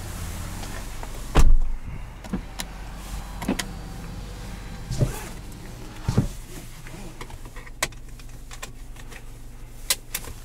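Someone getting into a car's driver's seat: a heavy thump about a second and a half in, then a string of light clicks and knocks from handling things in the cabin, over a steady low hum.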